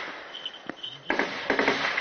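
Gunfire from an armed clash, soldiers firing: several sharp shots over a noisy background.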